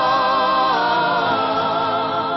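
Mixed male and female vocal group singing a long held chord with vibrato, moving to a new chord partway through.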